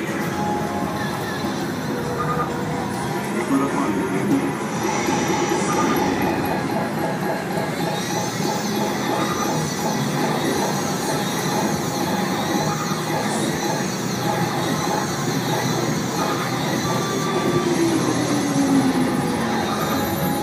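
Star Wars Trilogy slot machine playing its bonus-round music and sound effects: a dense, steady mix of electronic tones and sweeping effects.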